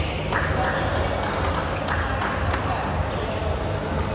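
Busy badminton hall din: many people talking over a steady low hum, with a few sharp clicks of rackets hitting shuttlecocks on the courts.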